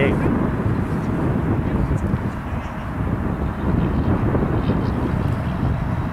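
Steady low rushing background noise with no distinct events, no commentary over it.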